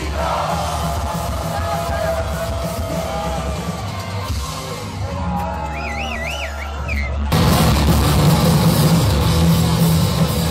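Punk rock band playing live in a club: a sustained low guitar-and-bass drone under wavering held notes and crowd yelling, then the full band comes in loud with drums and distorted guitars about seven seconds in.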